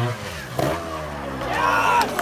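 GasGas two-stroke trials motorcycle engine coming off a rev and dropping in pitch to a low run as the bike is ridden over and down a large rock. Shouting voices join near the end.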